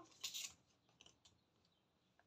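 Cardboard jigsaw puzzle pieces being handled on a cutting mat: a short scrape near the start, then a few faint clicks.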